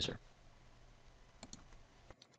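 Two quick clicks of a computer mouse button about one and a half seconds in, over faint background hiss.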